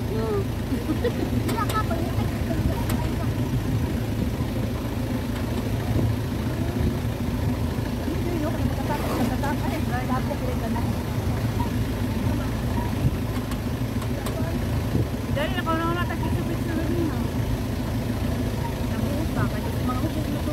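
Motor scooter engine running steadily at low speed on a dirt road, with short bursts of voices talking about nine and fifteen seconds in.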